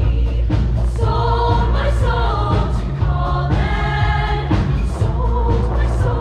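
Show choir singing together over a loud instrumental backing with a heavy, steady bass.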